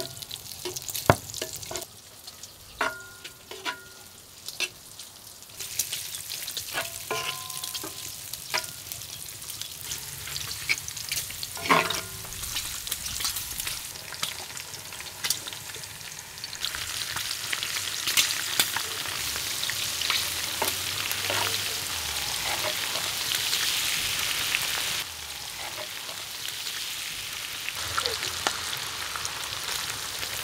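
Diced pork fat (salo) frying in a cast-iron pan with a steady sizzle, while a wooden spatula knocks and scrapes against the pan in sharp clicks, some of them ringing briefly. The sizzle grows louder twice, about a fifth of the way in and again about halfway, then drops back suddenly a few seconds before the end.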